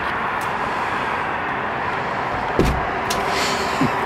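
A hotel room door being unlocked and opened, with a clunk from the lock and door about two and a half seconds in. Steady background noise continues throughout.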